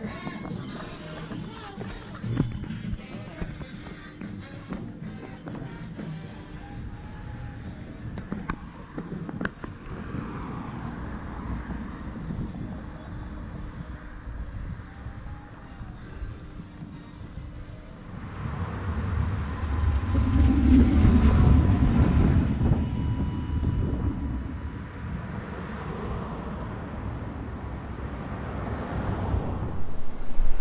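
Faint music in the background, and a passing vehicle whose rumble swells and fades about two-thirds of the way through.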